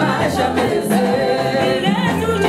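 A group of voices singing together, accompanied by hand-struck conga drums.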